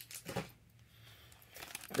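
Faint crinkling and rustling as a wrapped cardboard hobby box of trading cards is handled and picked up, a few soft crinkles near the start and again near the end with a quiet gap between.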